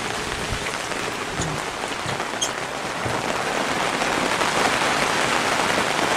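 Steady rain shower falling, an even hiss with a few faint drop ticks.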